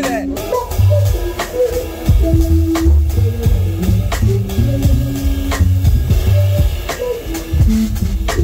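Live electric bass, drum kit and electric guitar playing together. Deep, moving bass-guitar notes are the loudest part, under sharp drum and cymbal hits and short guitar phrases, recorded loud and close to the drums.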